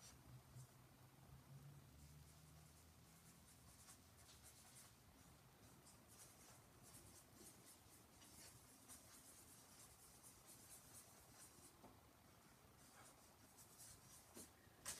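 Faint scratching of a pen on sketchbook paper, in many short strokes, as she draws.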